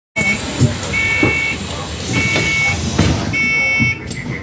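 An electronic warning beeper repeats a high, steady tone about once every 1.2 seconds, each beep lasting about half a second. Under it is the low rumble of a bus with a few knocks.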